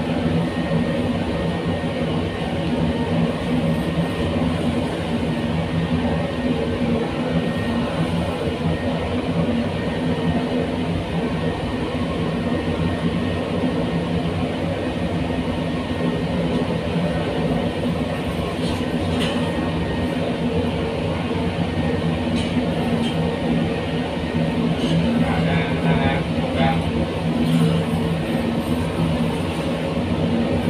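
Cremation furnace burner and blower running steadily, a constant low hum and rush of air and flame. A few faint clicks come in the second half, from the steel poking rods being worked in the furnace.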